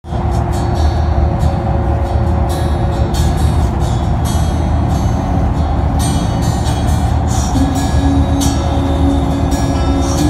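Steady low rumble of a moving bus heard from inside the cabin, with music playing over it; the sound cuts in suddenly at the start.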